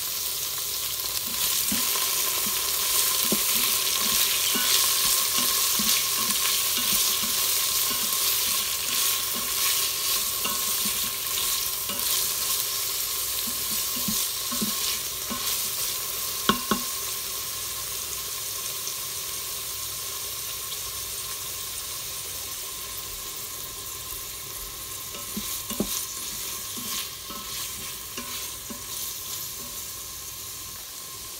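Garlic, bell pepper and spices sizzling in hot oil in a stainless steel pot, stirred with a wooden spatula that scrapes and clicks against the pot. There is one sharp knock about halfway through, and the sizzle slowly quietens over the second half.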